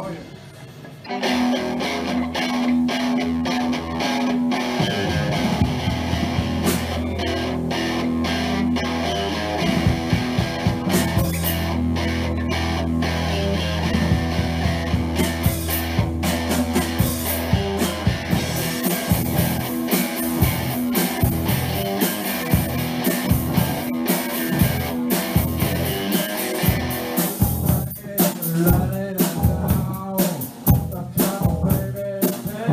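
Rock band playing live, with electric guitar, bass and drum kit coming in about a second in after a brief lull. The drum beat stands out more clearly from about ten seconds on.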